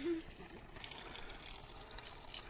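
Faint, steady high chirring of an insect chorus, such as crickets.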